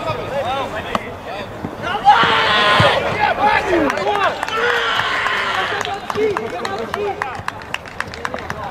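Men shouting across an outdoor football pitch during play, with a sharp thump about two seconds in and a burst of louder, higher shouting right after it as a goal goes in.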